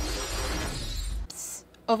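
A sustained shattering crash, noisy across the whole range, that cuts off suddenly about a second and a quarter in, followed by a brief sharp hit and a moment of near quiet.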